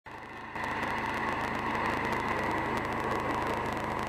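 Honda Integra Type R exhaust idling steadily out of a blued titanium tip, a little louder from about half a second in.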